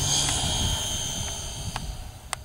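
Motor and propeller of a radio-controlled glider whining at a high steady pitch just after spooling up at launch, slowly fading as the model climbs away. Wind rumbles on the microphone.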